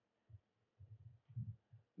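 Near silence: room tone with a few faint low bumps.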